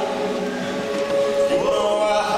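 An a cappella vocal group singing, holding a steady chord, with one voice sweeping upward about one and a half seconds in.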